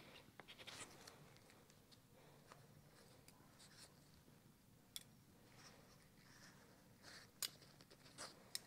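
Near silence with faint scratching rustles and a few sharp clicks, the clearest about five and seven and a half seconds in, from a surgical needle holder and forceps handling suture as stitches are tied.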